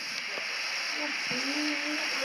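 Butane blowtorch flame hissing steadily as it heats a Loctited rim bolt to soften the thread lock.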